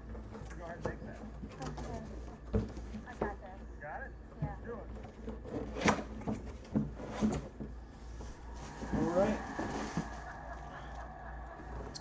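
Cardboard box being opened and handled by hand, with scattered sharp knocks and scrapes, and a stretch of plastic-bag rustling about nine seconds in as a wrapped football helmet is pulled out. Faint voices from a TV broadcast run underneath.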